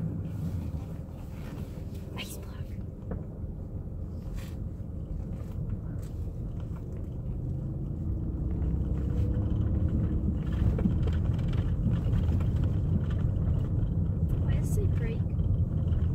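Van engine and tyre rumble heard from inside the cabin while driving slowly, growing louder about halfway through.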